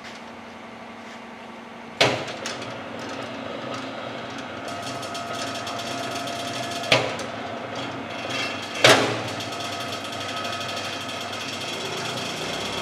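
Electric rebar bending machine switched on about two seconds in, its motor and gearbox then running with a steady hum and whine while its switches are function-tested. Two sharp clacks come in the middle of the run.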